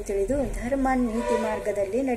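A woman's voice singing a devotional chant unaccompanied, in long held notes that step up and down in pitch.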